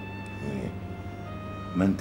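Soft background music of held, sustained tones, with a short vocal sound about half a second in and a man's voice beginning near the end.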